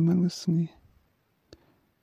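A voice speaking for the first moment, then a pause broken by one short, faint click about one and a half seconds in.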